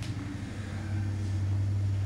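A steady low hum with faint background hiss: room tone in a pause between speech.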